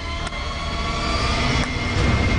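A steady low rumbling drone that slowly grows louder, with a few faint held tones above it, in the drama's soundtrack.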